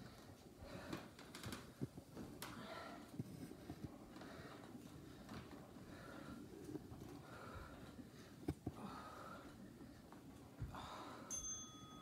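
Faint, heavy breathing of a woman exerting herself through push-ups, a breath about every second or so, with a few light knocks. A brief steady high tone sounds near the end.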